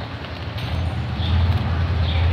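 Low, steady rumble of street traffic with an engine hum that grows stronger about half a second in.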